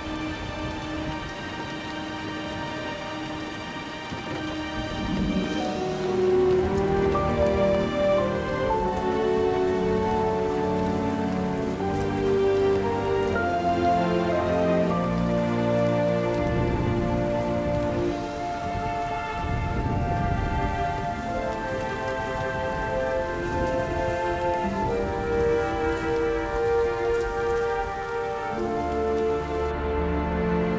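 Rain falling, under a film score of sustained chords that swells and grows louder about five seconds in.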